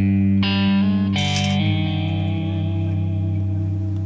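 Music sting: a distorted electric guitar chord struck suddenly, changing chords a couple of times within the first second and a half, then held and slowly fading.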